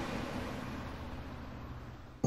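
City street traffic noise, a steady rush without distinct engines, slowly fading out.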